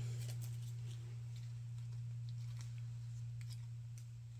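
Steady low electrical hum, with a few faint, scattered clicks of handling over it.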